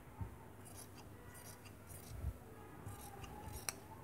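Large fabric scissors cutting through folded plain cloth: a series of faint snips of the blades, with one sharper click near the end.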